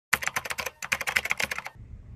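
Typing on a keyboard: a rapid run of key clicks, about ten a second, that stops shortly before the end.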